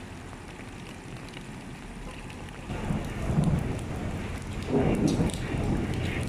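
Rain falling onto a flooded road, a steady hiss of drops on standing water, joined about halfway through by a louder low rumble that swells twice.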